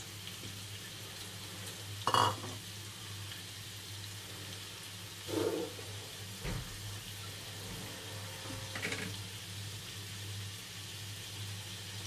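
Potato pieces frying in oil in a nonstick pan: a steady sizzle over a low hum, broken by a few short knocks and scrapes of the wooden spatula, the loudest about two seconds in.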